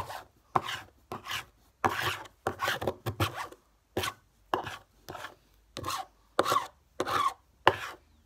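A scratchcard's latex coating being scratched off in short rasping strokes, about one or two a second, with brief pauses between them.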